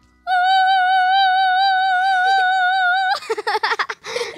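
A voice singing one long, high operatic note with vibrato for about three seconds, cut off abruptly, followed by a burst of laughter.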